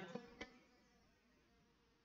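Near silence: faint room tone, with one faint click about half a second in.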